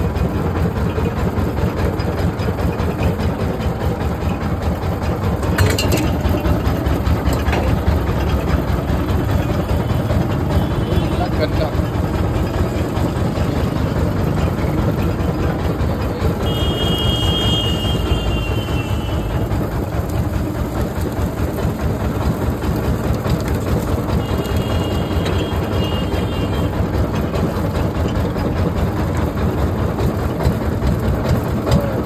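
Hindustan sugarcane juice crushing machine running steadily as cane is fed through its geared rollers. It makes a continuous low mechanical drone.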